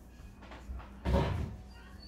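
Soft handling noise from hands working a metal crochet hook through cotton yarn, with one dull knock about a second in.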